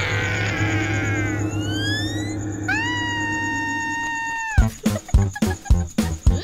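Cartoon soundtrack music and scare effects. A low droning chord with falling, then rising, glides gives way to a long held high wailing note. About three-quarters of the way in this breaks into a quick run of short, sharp beats.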